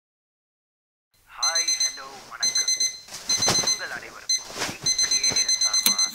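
Soccer-ball-shaped quartz alarm clock beeping in repeated bursts of high beeps, starting about a second in. The beeping stops at the very end as a hand presses down on top of the clock.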